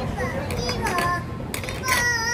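High-pitched children's voices chattering and calling out, with a couple of brief clicks or clatters.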